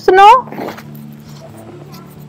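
A child's short, high-pitched squeal that rises in pitch right at the start, then only a quiet background.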